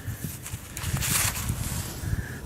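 Rustling of a fabric glove and soft handling bumps close to the microphone as a gloved hand turns over a freshly dug lead bullet, with a louder rustle a little past the middle.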